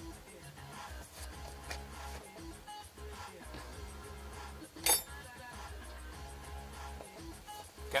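Faint background music with one sharp metallic clink about five seconds in.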